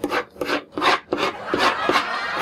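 Ballpoint pen scribbling hard on paper in quick repeated strokes, about four or five a second.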